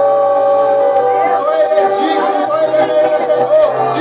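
Group of voices singing a worship song, largely a cappella: long held notes, then the melody begins to move about a second in.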